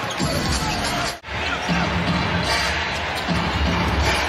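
Basketball arena sound: crowd noise with music over the arena's speakers and a ball being dribbled on the hardwood court. A brief dropout comes about a second in.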